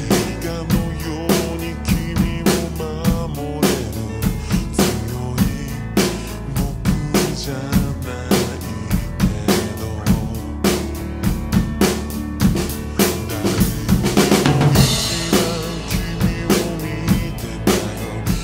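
Acoustic drum kit played along with a slowed-down pop song that has singing: a steady slow beat of bass drum, snare and hi-hat, with a cymbal crash ringing out about fourteen seconds in.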